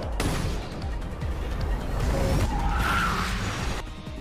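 Anime car-chase action sound effects over background music: a loud, dense rushing noise that starts abruptly, swells near the end and cuts off suddenly just before the scene changes.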